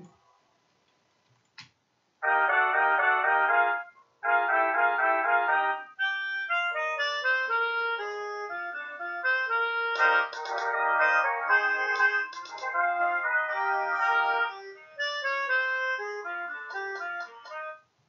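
Computer playback from Finale notation software of a frevo de rua arrangement, with a sampled brass section of trumpets and trombones. After about two seconds of silence it plays two held chords, then a busy, fast-moving brass passage from about six seconds in.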